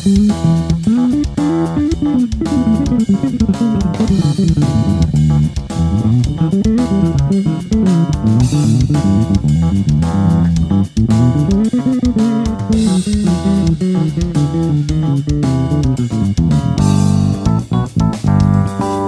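Electric bass guitar played fingerstyle, a solo of fast melodic runs that climb and fall over a backing track with drums.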